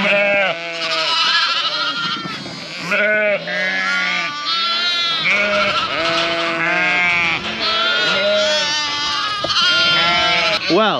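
A flock of Lleyn ewes and lambs bleating, with one call after another and many overlapping, some deep and some higher-pitched.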